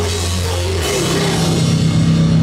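Live hardcore band playing a heavy riff on distorted electric guitars with drums. The low held notes shift up in pitch about a second in.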